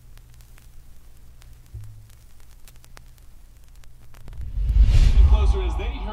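A low steady hum with faint scattered clicks. About four seconds in, a loud low rumble swells up, and a man's voice from a TV news broadcast starts talking over it.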